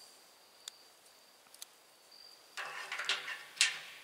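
A metal knife blade scraping debris from the open valve port on top of a propane tank: a couple of light clicks, then a rough scrape lasting about a second, with a sharp peak near the end. A steady high insect tone runs underneath.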